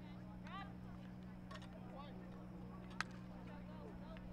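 Faint, distant shouts from field hockey players and spectators over a steady low hum, with one sharp crack about three seconds in.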